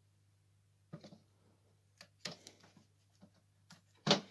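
Near silence with a few faint clicks and light rustles as fingers work a small crimped wire connector loose inside a multicooker's base.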